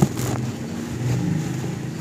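Dry cement chunks being crushed and crumbled by hand, with gritty dust and crumbs pouring into a plastic tub, and a sharp crack as a piece snaps right at the start. A low droning rumble swells underneath about a second in.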